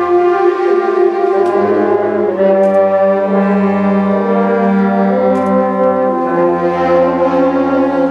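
School concert band playing slow, held chords led by brass, with a low bass note underneath. The harmony shifts to a new chord every couple of seconds.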